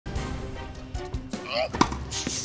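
Background music and voices, with a few sharp knocks and one loud, sharp tennis-ball strike near the end.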